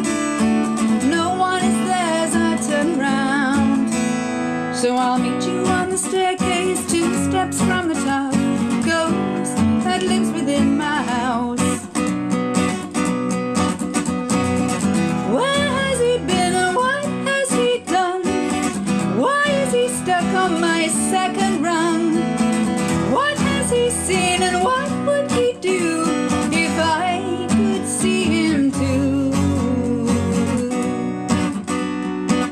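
Steel-string acoustic guitar being strummed steadily, with a woman singing over it.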